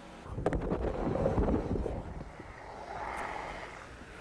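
Skateboard wheels rumbling over a wooden ramp, loudest in the first two seconds and then fading, with a sharp clack about half a second in.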